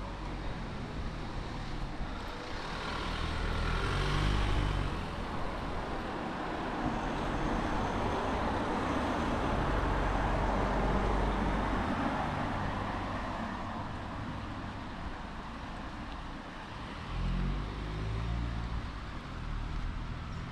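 Road traffic: cars and a van passing one after another, engine and tyre noise swelling and fading several times, loudest about ten seconds in.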